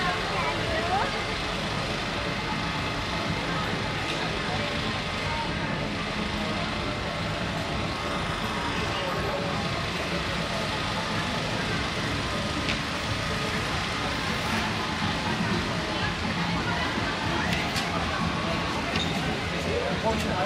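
Busy city-street ambience: indistinct voices of passers-by over steady traffic noise.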